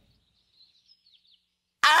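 Near silence with a few faint, short, high bird chirps. Near the end a loud, drawn-out cartoon shout starts suddenly.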